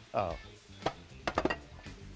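Metal spatula clinking and scraping against a metal frying pan while stirring diced tomatoes, peppers and onions, with a handful of sharp clicks in the second half.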